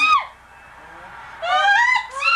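Baby squealing: a short high squeal that drops in pitch at the start, then a longer squeal rising in pitch near the end.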